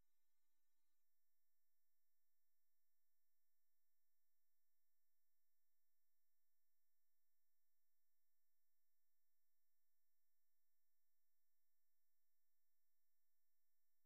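Near silence, with only a very faint steady hum.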